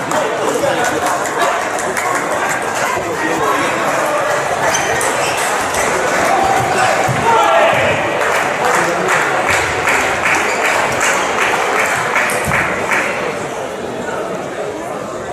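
Din of a large table tennis hall: many voices talking at once, mixed with the light clicks of table tennis balls striking tables and bats, which come in a quicker run of clicks past the middle.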